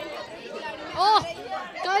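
Voices at a press scrum: talking and chatter, with a loud exclaimed "oh" about a second in and more words near the end.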